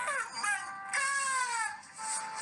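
A man's high-pitched wailing cries, his voice sliding down in pitch three times, the longest cry about a second in.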